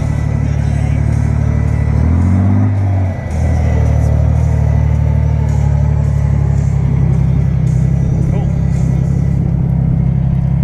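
A vehicle engine running steadily at low speed, close to the microphone. About two seconds in its pitch steps up briefly, then drops for a moment and settles back to the steady drone.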